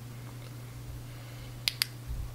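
Two quick sharp clicks close together near the end, over a faint steady hum: the switch of a UV curing light being clicked off once the resin on the fly has cured.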